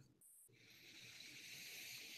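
A faint, slow breath drawn near the microphone: a soft, even hiss that starts about half a second in and lasts a couple of seconds.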